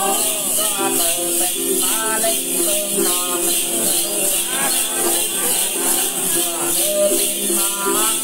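Tày Then ritual singing: a woman and a man sing a chanted melody over a plucked đàn tính gourd lute, with a steady, rhythmically pulsing shaken jingle of small bells.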